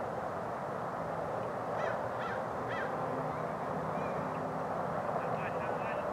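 A crow cawing three times, about half a second apart, a couple of seconds in, with a few more short calls near the end, over steady outdoor background noise.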